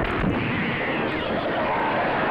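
Horror film trailer soundtrack playing: a steady, dense roar of sound effects without speech.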